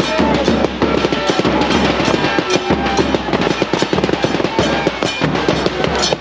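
Street fan drum band: bass drums and snare drums beaten in a fast, dense rhythm, with cymbals.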